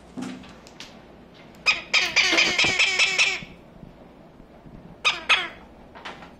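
A parrot gives one loud, harsh, buzzing call of about a second and a half, then two short calls of the same kind near the end.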